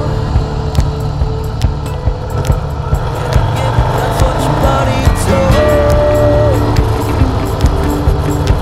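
Rock background music with a steady drum beat and a held, sliding guitar melody.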